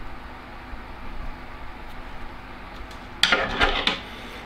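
Hands handling a nylon hooklink and small tackle on a table: quiet rubbing and handling noise, then a brief, much louder clatter or scrape near the end.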